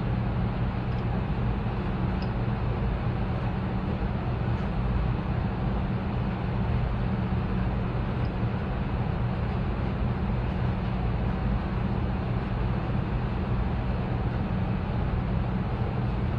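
Steady low machine hum that does not change, with a few very faint ticks.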